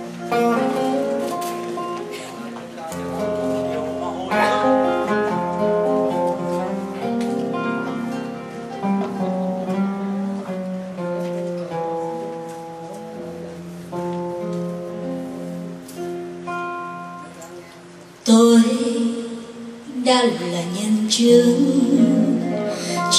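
Acoustic guitar playing a slow song introduction over a low held bass note. About eighteen seconds in, a woman's singing voice comes in through the microphone, louder than the guitar.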